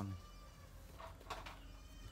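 Faint, drawn-out animal call, heard under quiet background.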